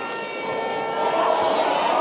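Football stadium crowd noise with a few long held tones running through it. It swells louder about halfway through as the attack closes on goal, with voices rising over it.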